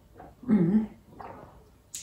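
A woman sipping coffee from a mug, with a short voiced 'mm' about half a second in and a fainter one after it.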